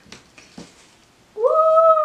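A woman's high, held "woo!" exclamation, starting suddenly about two-thirds of the way in after a quiet stretch with a few faint taps.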